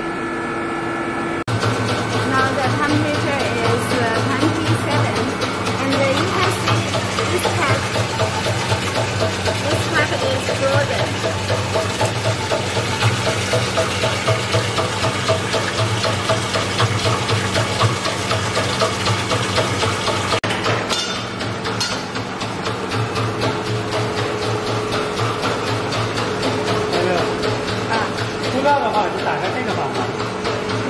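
The perfume mixing chiller machine switches on about a second and a half in and runs with a steady low hum. Water splashes as it pours from a pipe into the machine's stainless steel mixing tank.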